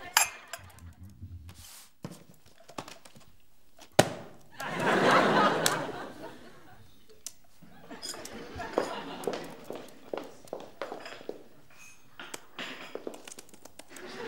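Porcelain teacups and saucers clinking as they are gathered up from a table: a sharp clink near the start and another about four seconds in, with smaller clinks and knocks after.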